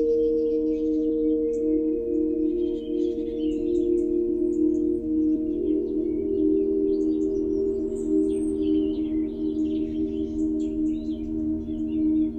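Ambient intro of a melodic electronic dance track: held synth pad chords, with short high chirping sounds flickering above them and no beat yet.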